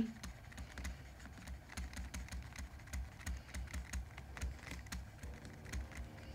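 Faint, irregular clicks and taps of a stylus on a tablet screen during handwriting.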